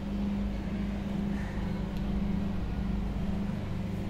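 A steady low hum under an even faint hiss, with no distinct event: background noise in the room.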